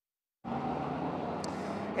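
Silence for about half a second, then steady outdoor street noise: a constant hum of distant road traffic.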